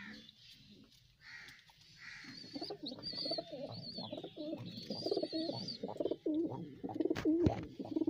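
Domestic pigeons cooing: a low, wavering coo repeated over and over, starting about two seconds in, with thin high chirping above it. A single knock near the seven-second mark.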